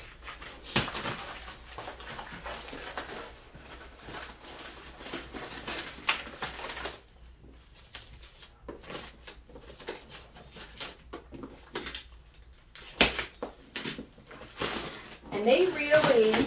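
Clear plastic stretch wrap crinkling and tearing as it is peeled off a cardboard box, quieter for a few seconds past the middle, with a sharp knock about three seconds before the end.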